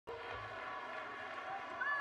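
Ballpark crowd background with several horns held on steady notes together, one sliding in pitch near the end.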